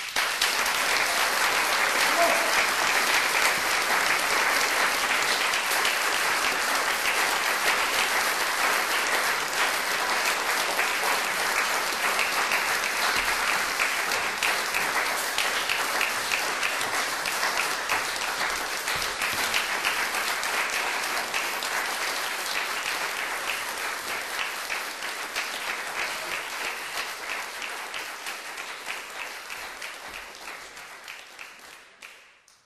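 Audience applause that breaks out suddenly after a near-silent pause, a dense clatter of many hands clapping that slowly dies down.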